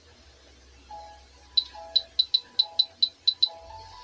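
Phone keyboard typing clicks: nine sharp, high taps at an uneven pace over about two seconds midway, over soft background music.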